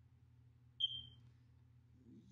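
A single short high-pitched tone, falling slightly in pitch, about a second in, over a faint steady low hum.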